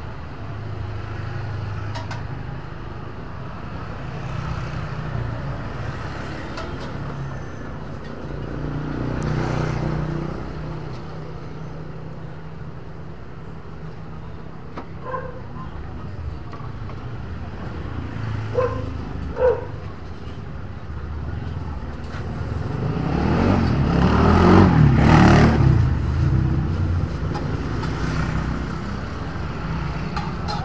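Street traffic: a steady low engine rumble, with a vehicle passing close by that swells up to the loudest point about three quarters of the way through and fades again.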